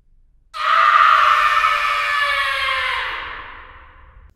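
A single long scream, used as an intro sound effect. It starts abruptly about half a second in, is loudest at once, then slides slowly down in pitch and fades away over about three seconds.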